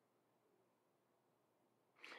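Near silence: a pause between sentences, with only faint room tone.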